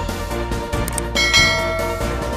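Background music with a bright bell-chime sound effect, a notification-style ding that starts suddenly a little past halfway and rings on.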